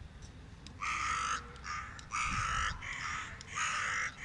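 Carrion crow cawing: a run of about five caws, each about half a second long, beginning about a second in.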